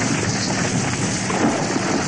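A steady, dense rush of noise with no clear tune or voice in it.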